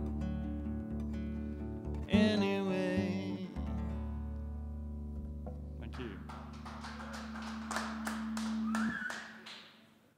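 Acoustic guitar's final chords: one chord rings on, another is strummed about two seconds in and slowly dies away. About six seconds in, a small audience starts clapping, and the clapping fades out near the end.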